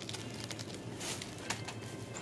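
Faint crinkling and clicking of krupuk crackers in a plastic packet being handled, over a steady low hum.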